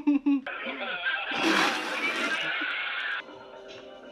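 Soundtrack of a funny-video clip playing back, with music and voices and a brief louder, hissy burst about a second and a half in; it drops much quieter about three seconds in.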